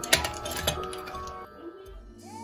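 A few sharp metal clinks in the first second, the marcel irons knocking against their metal heating stove, over background music.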